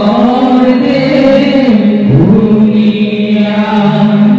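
Dihanam, Assamese devotional chanting: several voices sing a slow line together with long held notes. The pitch slides upward about two seconds in.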